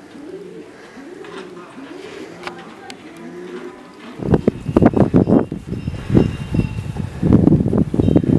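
Pigeons or doves cooing: the same low rising-and-falling call repeated about every 0.7 s. About four seconds in this gives way to a louder, irregular jumble of knocks and deep rumble.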